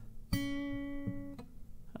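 Acoustic guitar string plucked once, a single note ringing for about a second before it is damped.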